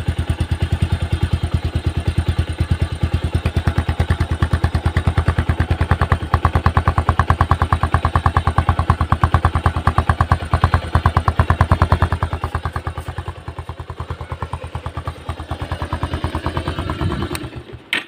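Bajaj Pulsar 150's single-cylinder engine idling steadily with even exhaust beats. The sound stops just before the end.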